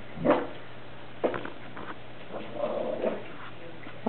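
Small affenpinscher barking in alarm: two sharp barks about a second apart, the first the loudest, then softer, drawn-out vocalizing about two and a half to three seconds in.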